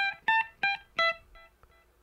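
Electric guitar in a clean tone playing a short single-note phrase high on the first string (frets 15, 17, 15, 12): four picked notes about three a second, rising then falling, each ringing briefly. Fainter repeats of the notes follow in the last second.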